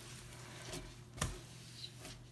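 Faint rubbing of the soft side of a cloth bathroom scrub mitt wiped across a glass shelf, with one light sharp tap a little over a second in.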